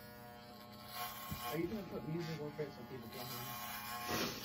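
Electric hair clippers running with a steady buzz, cutting hair at the back of the head.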